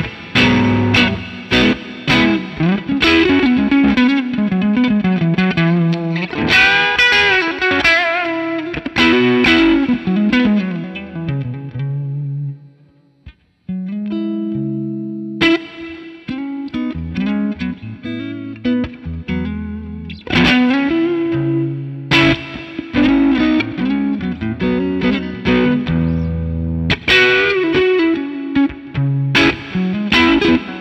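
Electric guitar (Fender Stratocaster) played through a Benson Preamp overdrive pedal into a Fender '65 Twin Reverb amp, set so the amp is just on the edge of breaking up. Picked single-note lines and chords, with a brief break a little before halfway.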